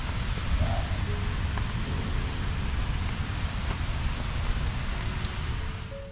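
Steady rain falling, an even hiss with a low rumble underneath.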